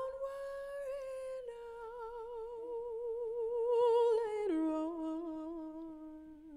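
A female jazz vocalist sings unaccompanied, holding long notes with vibrato. The line steps down in pitch, with a lower note about a second and a half in and a much lower one near the end.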